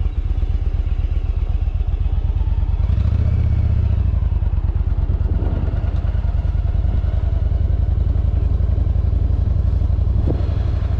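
Yamaha V Star 1100's air-cooled V-twin engine running under way, its exhaust pulsing steadily. About three seconds in the engine note strengthens as the bike picks up speed out of the turn.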